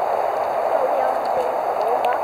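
Steady, even hiss of water, with no break or change.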